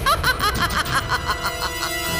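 Background music: a rapid run of short, hooked pitched notes, about five or six a second, over a low pulsing beat, with steady held tones coming in near the end.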